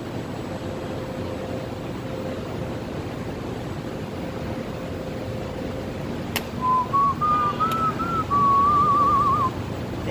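Steady hum of the building's air handling, then, about six and a half seconds in, a person whistling a short tune: a few notes stepping upward, ending in a quick warbling trill.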